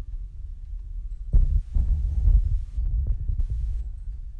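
Clear plastic wrapper sheet crinkling and rustling as scissors trim it: an uneven crackle that starts about a second in and lasts about two and a half seconds. Background music with a low throbbing beat plays throughout.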